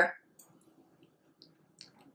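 A few faint, sharp mouth clicks from chewing a bite of food, the most distinct one near the end, after the tail of a spoken word.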